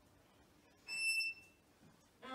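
A violin sounds one short, high note about a second in, during a pause in the string trio's playing; the rest is quiet room tone.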